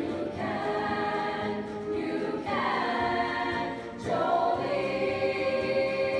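A high-school girls' choir singing in held chords, the phrase changing about two seconds in and again about four seconds in.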